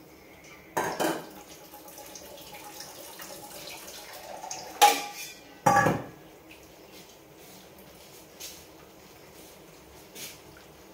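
Stainless steel kitchen vessels being handled on a counter: a clang about a second in, then two louder metallic clangs a little before and after the five-second mark, with small knocks in between and after.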